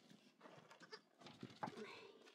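Faint bleating of livestock, with a couple of soft knocks in the middle.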